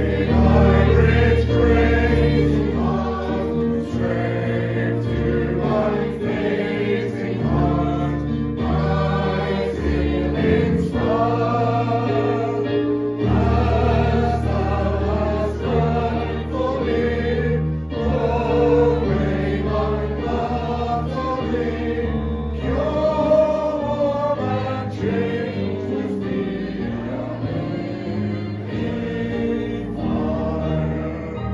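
Congregation singing a hymn together over held accompaniment chords.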